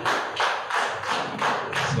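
An audience clapping together in a steady rhythm, about three claps a second.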